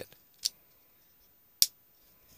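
Leatherman Crater c33lx folding knife's blade clicking as it is worked open and shut: two sharp clicks about a second apart, the second louder.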